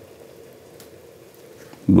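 Quiet room tone with a faint steady hum. A man's voice starts right at the end.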